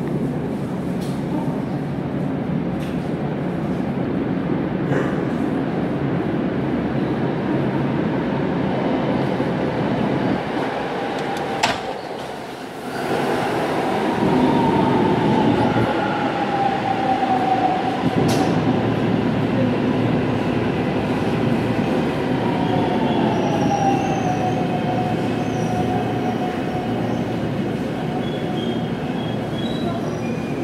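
A Bundang Line subway train running through the tunnel and into the underground station, a steady rumble of wheels on rail broken by a few sharp clicks. About halfway in a falling whine sets in, and another comes about 22 s in, as the train slows along the platform.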